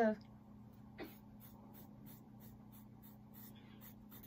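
Faint snipping of scissors cutting through hair, with one sharper snip about a second in, over a low steady hum.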